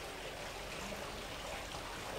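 A steady, faint hiss of background noise: room tone and microphone noise, with no distinct event.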